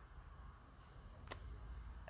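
Faint background with a steady high-pitched whine and a low hum, broken by a single sharp click just past halfway.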